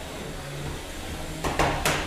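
3 lb beetleweight combat robots: a low hum, then two sharp impacts about a third of a second apart near the end as the robots collide.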